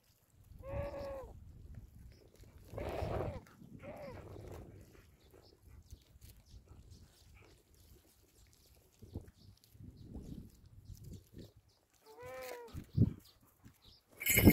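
Harris's hawk calling close by: four short, high calls that arch or fall in pitch, the loudest about three seconds in and the last near the end. Low rumble between the calls, and a sharp knock shortly before the end.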